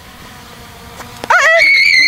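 A person's loud, high-pitched scream that breaks in suddenly about a second and a half in, rising and then holding one steady high pitch to the end. Before it there is only low background sound.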